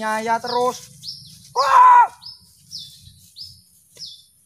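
A small bird chirping over and over, short high calls that each fall in pitch, about two a second. A person's voice sounds briefly at first, then one loud cry about a second and a half in.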